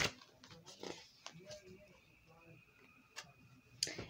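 Paperback book pages being handled and turned: soft rustles and scattered small taps, the sharpest one right at the start, with a faint murmur of voice in the first second or so.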